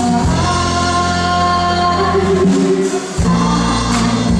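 Female lead vocalist singing long held notes over a live band, recorded from the concert audience. The low end of the band drops out briefly about three seconds in, then comes back.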